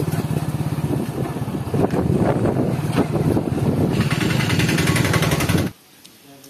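Motorcycle engine running at a steady pulse while riding along a rough dirt track, with scattered knocks over it. The sound cuts off suddenly near the end.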